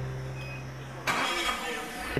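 A forklift's engine running, heard as a steady, noisy hiss with a faint hum, which starts about a second in. Before that, a held low musical tone fades out.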